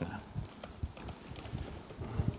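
Computer keyboard keystrokes: a run of irregular light clicks as code is typed and edited.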